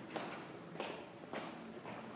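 Faint footsteps on a hard floor, about three steps roughly half a second apart.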